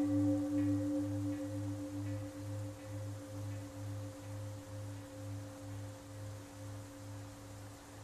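A struck bell ringing on, its low tone slowly fading with a steady wavering pulse about two or three times a second.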